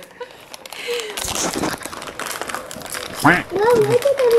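Gift-wrapping paper rustling and crinkling as a present is unwrapped by hand, with a short laugh at the start and a brief voice about three seconds in.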